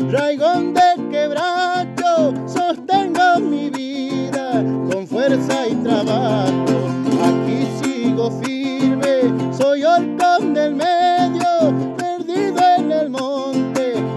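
A man singing a folk song over a steadily strummed acoustic guitar, the strums in an even rhythm.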